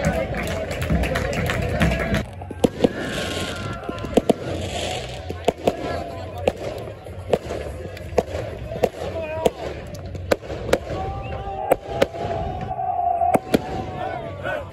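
Crowd noise for about the first two seconds, then a string of sharp firecracker bangs going off irregularly, about one or two a second, over men shouting and cheering.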